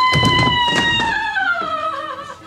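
A woman screaming in shock just after a pistol shot: one long, high scream that slowly falls in pitch, with a few light knocks under it.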